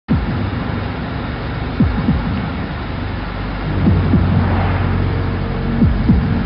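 Steady engine and road rumble of a car driving, heard from inside, with a few short falling sweeps about two and four seconds in.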